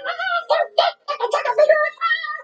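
Animated children's show soundtrack playing from a television: high-pitched vocal sounds in short pitched bursts, with a brief gap about a second in.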